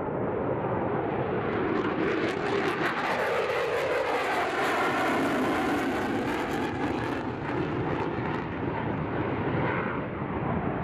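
F-22 Raptor jet fighter flying past, its twin Pratt & Whitney F119 turbofans on afterburner, a continuous jet roar with a ragged crackle from about two seconds in to about seven.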